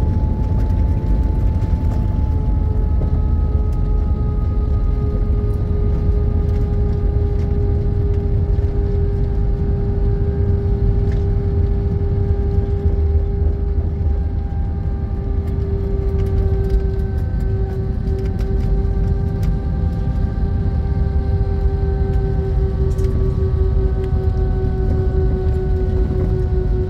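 Inside the cabin of an airliner rolling along the runway after landing: a steady low rumble from the wheels and airframe, with the jet engines' whine slowly falling in pitch as they wind down.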